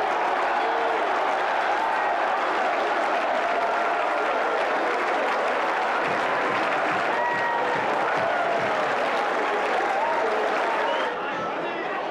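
Football stadium crowd applauding and cheering a home goal, a steady wash of clapping and many voices that eases off slightly near the end.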